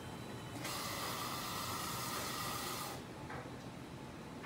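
A steady hiss that starts abruptly just over half a second in and cuts off about two and a half seconds later.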